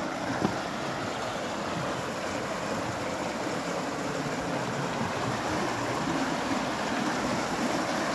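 River water rushing over rapids through a narrow basalt rock gorge, a steady noise that grows a little louder toward the end.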